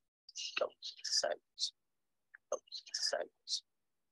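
Soft whispering in a few short breathy phrases, with no voiced words.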